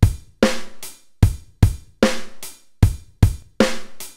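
Drum beat: sharp kick-and-snare hits about two and a half a second, each trailing off in bright cymbal-like ringing, with no other instrument yet.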